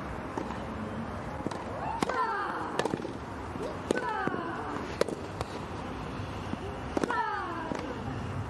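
Tennis rally on a grass court: a run of sharp racket-on-ball strikes traded back and forth about a second apart. Three of the strikes carry a player's short, falling grunt of effort.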